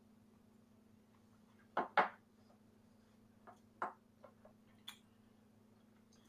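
Two people sipping neat high-proof whiskey: a few short mouth and breath sounds, the loudest pair about two seconds in, then a small sharp click near the end, over a steady low hum.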